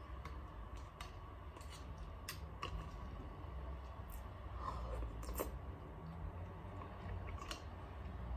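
Eating kina, New Zealand sea urchin roe, from a plastic pottle: a metal fork clicks and scrapes against the tub several times between soft wet chewing sounds, over a low steady hum.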